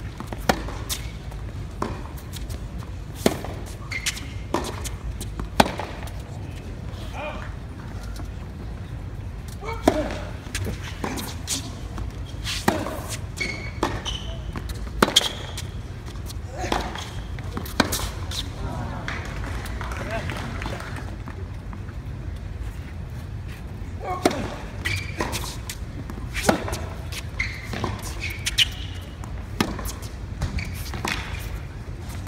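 Tennis rally on a hard court: sharp racket strikes and ball bounces, one every second or so, over a steady low hum and voices murmuring in the stands.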